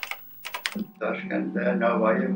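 A few sharp clicks in the first second of an old videotape recording. A man's voice then begins over a steady hum.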